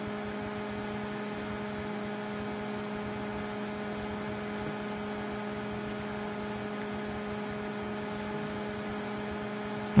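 A steady hum made of a few fixed low tones over a faint hiss, unchanging in level throughout; nothing else stands out.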